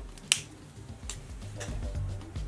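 A few sharp clicks of small plastic makeup items being handled: one loud click about a third of a second in, then fainter ones. Quiet background music runs underneath and grows louder near the end.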